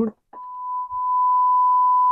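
A 1 kHz sine-wave test tone from an FG-200 DDS function generator, played through an audio amplifier: a single steady pure tone that starts a moment in, swells up over about a second, then holds level.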